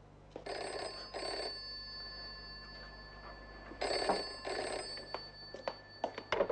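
Wall-mounted telephone ringing in a double-ring pattern: two short rings close together, a pause of about two seconds, then two more.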